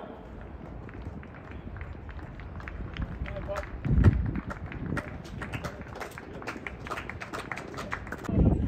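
Outdoor ambience with faint voices, a low thump about four seconds in, and scattered sharp clicks through the second half.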